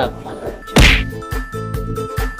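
Background music, cut by one loud, sharp whack a little under a second in.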